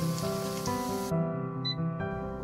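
Soft instrumental background music with held notes, over the sizzle of garlic slices frying in oil. The sizzle cuts off suddenly about a second in, and a brief high beep from an air fryer's touch panel follows near the end.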